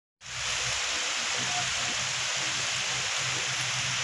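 Steady, even hiss of eggplants and okra grilling on a wire grate over charcoal embers.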